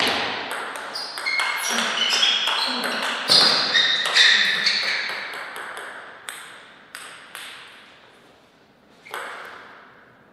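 Table tennis rally: quick sharp clicks of the ball off rubber paddles and the table, each with a high ringing ping, for about five seconds. This is followed by a few scattered bounces as the ball drops to the floor after the point ends.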